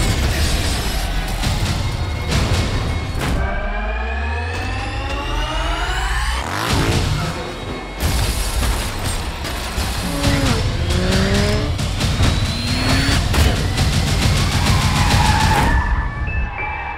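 Action-trailer music mixed with a sports car and a motorcycle at full throttle: engines revving up in rising sweeps, tyres skidding, and a couple of sharp hits around the middle.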